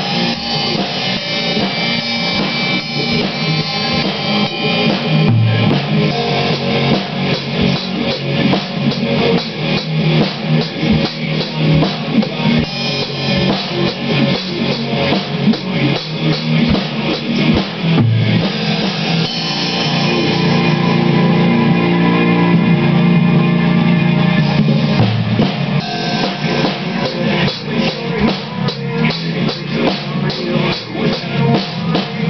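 A Yamaha drum kit is played hard, with bass drum and cymbals, over a rock song with guitars. About two-thirds of the way through, the drumming thins to a held, sustained passage for several seconds, then the full beat comes back.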